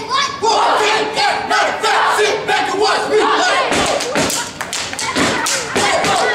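Step team shouting a chant together, then sharp stomps and hand claps start a little past halfway through.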